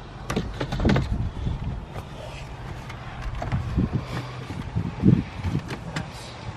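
Plastic dashboard trim bezel around a Ford F-150's radio being handled and fitted onto its clips: scattered clicks, knocks and plastic rubbing, with the loudest knock about five seconds in.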